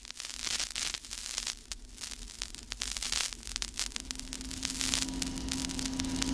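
Surface noise of an old vinyl record: crackle, pops and hiss as the needle plays the opening groove. About four seconds in a steady low hum fades in and grows louder as the recording begins.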